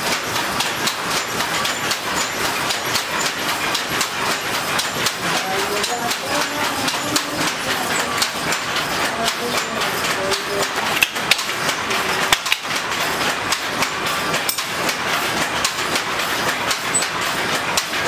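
Wooden hand looms clattering in a quick, steady rhythm of clicks and knocks as the shuttle is thrown and the batten beats the weft in. A couple of sharper knocks stand out a little past the middle.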